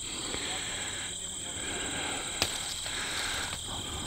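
Steady high-pitched trilling of field insects, with one sharp snap about two and a half seconds in as an apple is pulled off a wild apple tree.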